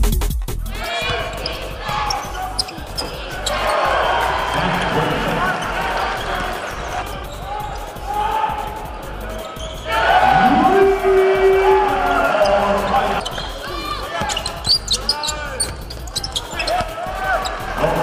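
Live basketball game sound in an arena: the ball bouncing on the hardwood floor and sneakers squeaking as players run, with voices throughout.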